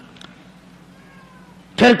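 A pause in a man's sermon with a faint low steady hum and a faint drawn-out tone, falling slightly, about halfway through. His voice comes back near the end.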